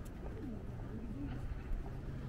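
A pigeon cooing, a few low bending coos in a row, over the steady low rumble of a city street.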